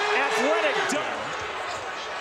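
Basketball arena sound: steady crowd noise with sneakers squeaking and a ball bouncing on the hardwood court.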